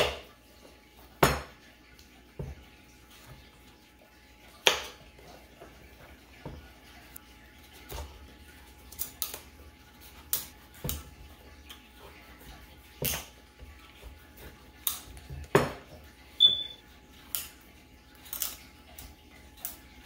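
Knife cutting and paring a pumpkin on a wooden chopping board: sharp, irregular knocks of the blade against the board, a few seconds apart or in quick pairs, with a brief high squeak late on.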